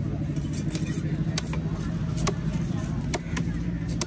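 A large fish-cutting knife chopping diamond trevally fillet into steaks on a wooden block: about half a dozen sharp chops at uneven intervals. Under it runs a steady low engine drone.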